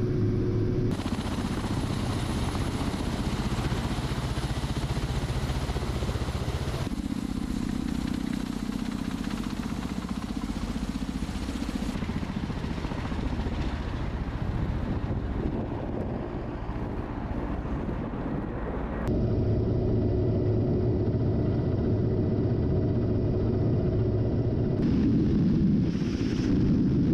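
Kamov Ka-52 attack helicopter in flight: its coaxial rotors and turbine engines running, a loud continuous noise that changes abruptly several times between inside and outside views, with a steady hum in some stretches.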